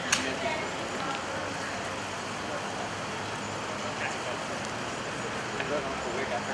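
Outdoor street ambience: a steady hum of traffic noise with faint, distant voices, and one sharp click just after the start.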